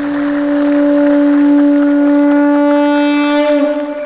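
A conch shell blown in one long, steady note that wavers and falls away near the end.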